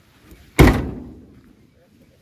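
The steel cab door of an old pickup truck slammed shut once, about half a second in: a single sharp bang that dies away over about a second.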